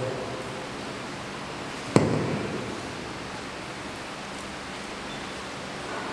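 Steady hiss of room noise, with one sharp thump about two seconds in that fades out with a short echo.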